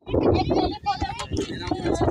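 People talking; the words are indistinct.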